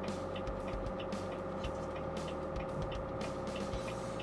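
Volvo heavy truck's diesel engine running steadily at about 1900 rpm with the engine brake on in position two, heard from inside the cab. It holds the truck at a constant 28 mph in seventh gear on a downhill grade without the service brakes. The drone stays even throughout, with a steady mid-pitched tone.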